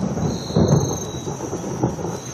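A low, uneven rumble, with a steady high whine above it.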